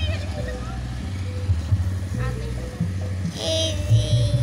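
Loud music from a village celebration's loudspeaker sound system, heard mostly as a heavy bass beat. Voices are heard over it.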